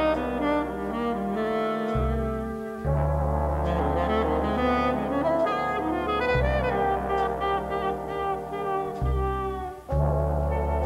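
Jazz big band playing a slow ballad: the brass section of trombones and trumpets holds sustained chords over bass notes that change every few seconds, with a brief break just before the end.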